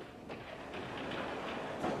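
Sliding chalkboard panel being moved along its track, giving a few light knocks and a low rumble, with a slightly louder knock near the end.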